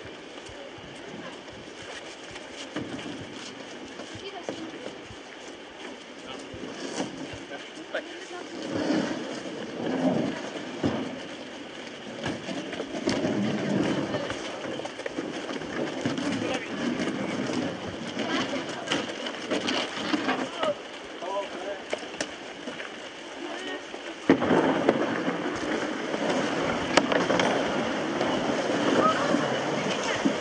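A group of children and adults chattering and calling at once, indistinct, as they lift and carry a canoe. About six seconds before the end the chatter suddenly gets louder.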